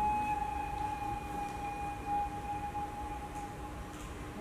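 A single sustained ringing musical tone, steady in pitch and slowly fading, with a fainter higher overtone that dies away about halfway through.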